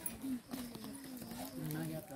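People talking, their voices low and continuous; speech is all that fills the moment.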